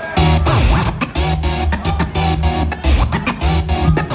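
Live hip-hop DJ set played loud through a club PA: turntable scratching over a heavy, repeating beat.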